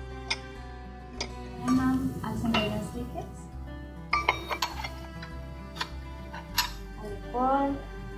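Several sharp clinks and taps of kitchen utensils and bowls against a stainless steel mixer bowl as ingredients are added, over steady background music.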